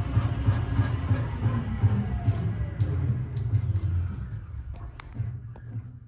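Shock absorber dynamometer cycling a repaired BMW G30 Bilstein DampTronic Sky adaptive damper with its solenoids unpowered, so the damper is at its softest. The run makes a low pulsing rumble that dies away about four to five seconds in as the test cycle ends.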